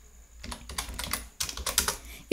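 Computer keyboard typing: a short run of keystrokes starting about half a second in, thickest near the end.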